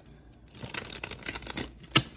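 A deck of tarot cards being shuffled by hand: a fast, crackly flutter of card edges, ending in one sharp snap.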